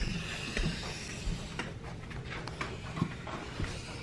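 Felt-tip marker drawing on poster board: faint scratchy strokes and a few light taps over a low steady hum.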